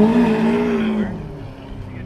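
A car engine held at raised revs, then falling back to a steady idle about a second in.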